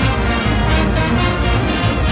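Brass band with sousaphones and drums playing loudly and without a break, with a strong low bass line.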